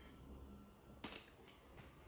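Near silence broken by a few sharp clicks, four in under a second, starting about a second in.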